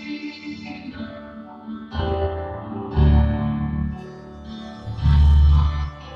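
Gospel church music played by instruments, with deep bass notes landing about two, three and five seconds in.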